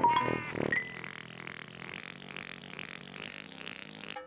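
Children's TV theme music ending: a rising run of notes peaks on a loud final note right at the start and dies away within about a second. A softer sustained, fluttering sound then carries on until near the end.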